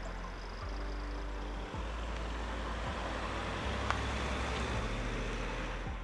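Volkswagen T-Roc SUV with its 2.0 TDI diesel engine driving by at low speed: a steady low engine hum with tyre noise.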